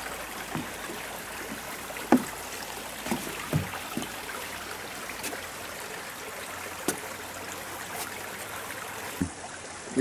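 Steady rushing of a flowing creek, with a few short scattered knocks over it.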